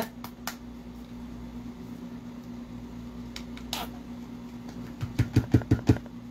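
Painting supplies handled on a table: a few faint clicks and small rustles over a steady low hum, then a quick run of soft low knocks near the end as a paint tube is picked up and handled.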